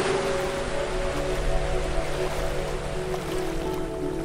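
Soft ambient music of long held chords over the rush of ocean waves, the surf loudest in the first second or so and then settling.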